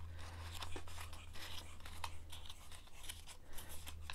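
Faint rustling and crinkling of a large sheet of folded paper being handled and opened out, with a few soft crackles.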